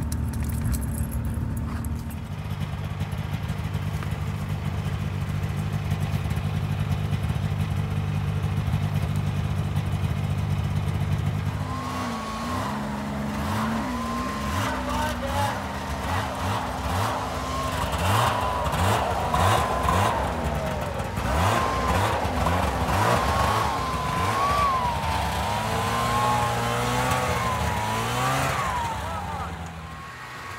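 Snowmobile engines running: a steady low drone for the first dozen seconds, then repeatedly revving up and down as the sleds push through deep, unbroken snow.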